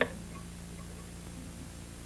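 Steady hiss and low hum of an old film soundtrack, with a single brief click right at the start.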